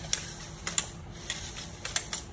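LEGO Spike Prime motor driving a plastic beam-and-gear arm linkage, a faint steady hum with about five sharp plastic clicks spread through it as the arm swings.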